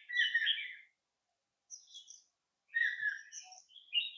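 Wild birds calling in the forest: a loud run of high chirps in the first second, then shorter chirping phrases at different pitches about two seconds in and again through the last second or so.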